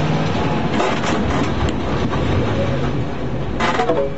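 Police car's engine and road noise heard from inside the cabin, the engine note holding steady and then dropping as the car slows for a turn.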